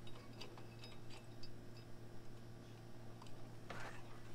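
Faint, scattered metallic clicks and taps as the foot is slid onto the drop leg of an electric A-frame trailer jack and pinned in place, with a short scrape near the end.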